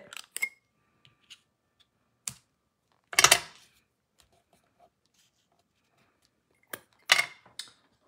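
Scissors snipping baker's twine and handled on the craft mat, with a few separate short clicks and taps of paper-crafting work; the loudest is a brief clatter about three seconds in, and a few more come near the end.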